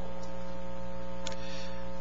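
Steady electrical mains hum, a stack of steady tones in the sound system, with one faint tick a little past the middle.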